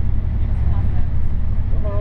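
Steady low rumble of a tour bus's engine and road noise heard from inside the cabin while it drives. Passengers' voices are faintly in the background, and one voice starts talking near the end.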